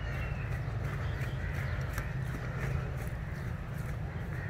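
Steady outdoor noise picked up by a phone's microphone while the person holding it walks, dominated by a low rumble of wind and handling noise, with faint scattered ticks.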